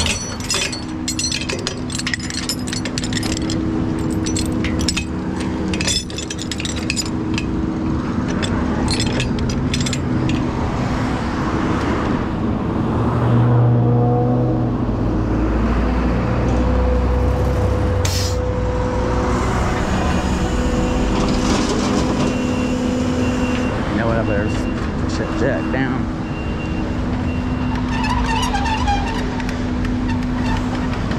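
Rollback tow truck running with its hydraulic winch engaged, a steady hum, while it winches a trailer up the tilted steel bed. Chains clink and rattle in the first several seconds, and road traffic passes close by.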